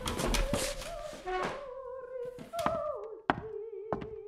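An operatic singing voice holding long, wavering notes, with several sharp knocks over it.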